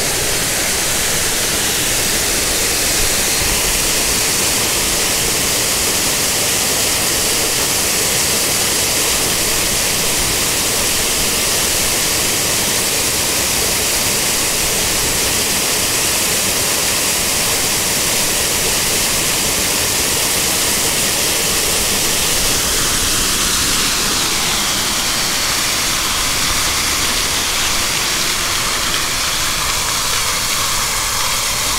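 Artificial waterfalls and fountain jets pouring over a rock garden: a loud, steady rush of falling water, its tone shifting slightly about two-thirds of the way through.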